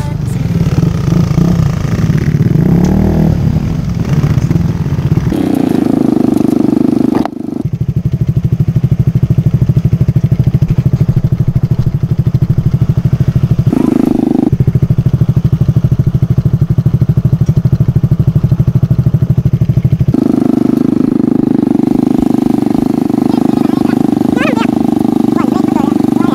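Motorcycle engine close by, slowing as the bike rolls to a stop, then idling with a fast, even putter.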